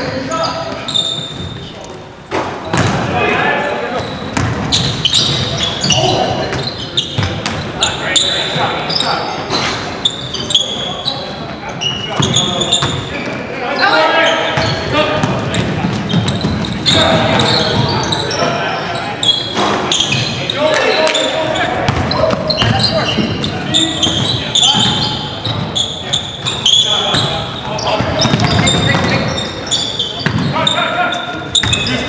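Live indoor basketball game in a large, echoing gym: the ball bouncing on the hardwood, sneakers squeaking and players' indistinct voices calling out, running throughout.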